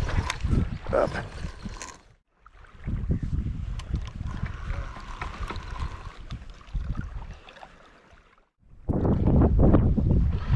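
Wind buffeting the microphone, a low rumble. It drops out to silence twice, briefly about two seconds in and again just before the end, then comes back louder.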